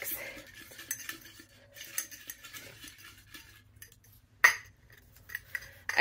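Folded paper slips rustling and clinking against the sides of a glass clip-top jar as a hand rummages through them, in a run of small scattered clicks, with one sharper click about four and a half seconds in.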